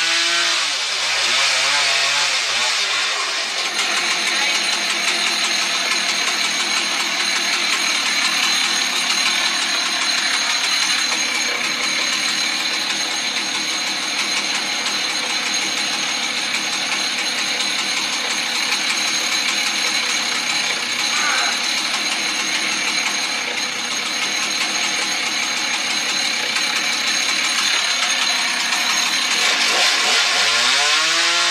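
Husqvarna 110 two-stroke chainsaw idling steadily between cuts. Its revs fall away at the start as the throttle is let off, and it revs up again at the very end.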